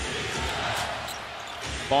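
A basketball being dribbled on a hardwood arena floor, several low thumps about half a second apart, over the steady noise of an arena crowd in a TV broadcast.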